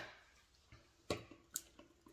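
A few light knocks of plastic paint squeeze bottles being set down and picked up on a granite countertop. The two sharpest come a little past one second in, about half a second apart.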